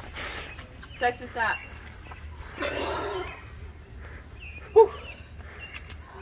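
Water from a garden hose spray nozzle splashing over a man's face and cupped hands as he rinses pepper spray from his eyes. A noisy sputtering splash comes a little before halfway, with short voice sounds about a second in and one sharp burst near the end.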